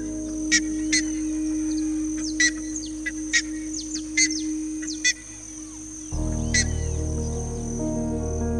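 A series of short, high bird chirps, some falling in pitch, roughly one a second, over soft background music with sustained chords. A deeper chord comes in about six seconds in.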